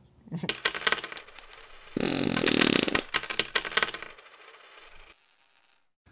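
Coins falling onto a pile of coins: a rapid run of metallic clinks with high ringing, thickest in a dense pour about two to three seconds in, then dying away.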